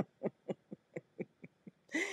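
A person's voice in a string of short pulses, about four a second, growing fainter.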